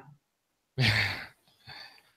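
A man's breathy exhale about a second in, followed by a shorter, fainter breath near the end.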